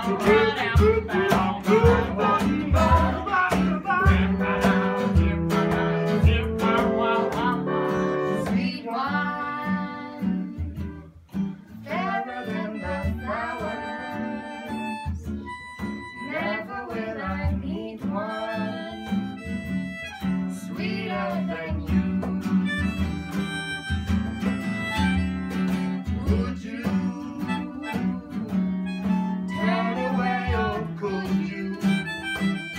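Acoustic guitar playing an instrumental passage, with quick picked notes in the first several seconds. From about ten seconds in, a held, slightly wavering melody line plays over the guitar.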